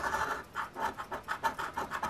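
A penny scratching the scratch-off coating from an instant lottery ticket, in rapid short strokes, about six a second.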